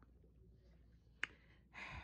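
Quiet room with a single sharp click a little over a second in, followed by a short breathy rush of noise near the end.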